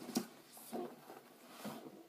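Hands rummaging through a handbag: faint rustling with a few soft knocks from small items inside.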